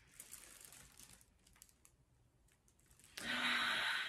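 A woman smelling an opened jar of body polish: faint sniffing and small plastic handling clicks, then, about three seconds in, a loud breathy sigh of pleasure lasting under a second.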